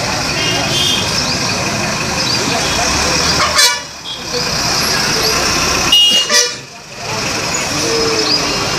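Busy street sound: crowd chatter and road traffic with vehicle horns honking, broken by two loud sudden bursts, about three and a half and six seconds in.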